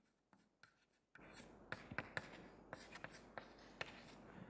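Chalk writing on a chalkboard: faint, irregular taps and scratches of the letter strokes, starting about a second in.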